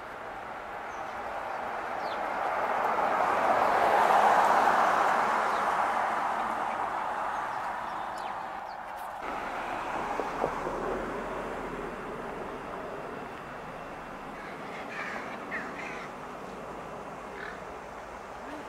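A swell of passing-vehicle noise that builds to a peak about four seconds in and fades away by about eight seconds, followed by crows cawing a few times in the second half.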